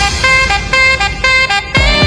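Instrumental saxophone pop cover in a break of short, clipped horn-like notes over a thin backing. Near the end a steady kick drum and bass come back in under a held saxophone note.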